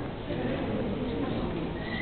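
Gallery ambience: indistinct voices of other visitors over steady room noise, with a thin high steady tone starting near the end.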